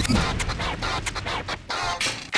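DJ scratching a vinyl record on a turntable, in rapid back-and-forth strokes that sweep up and down in pitch, over music.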